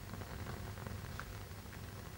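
Faint, steady hiss of a gas blowtorch flame burning, with a low steady hum under it.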